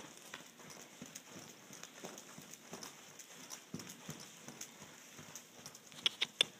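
Faint, soft hoofbeats of a horse moving on a lunge line over deep arena sand, a loose run of dull thuds.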